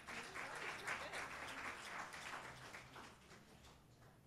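Audience applauding, a dense patter of many hands clapping that thins and dies away near the end.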